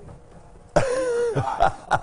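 A man breaks into laughter just under a second in: a sudden loud burst, then shorter bursts.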